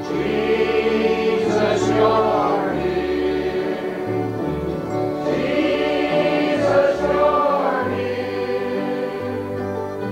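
Voices singing a hymn together in chorus with instrumental accompaniment, in long held phrases over a bass line that moves from note to note.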